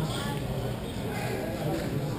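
Indistinct voices of hockey players calling out across an echoing indoor rink, with scattered light clacks from play on the floor.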